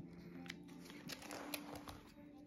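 Clear plastic photocard binder sleeves being turned by hand: faint crinkling with a few light clicks, over quiet background music.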